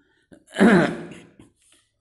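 A man clearing his throat once, about half a second in: a loud start that falls in pitch and fades within a second.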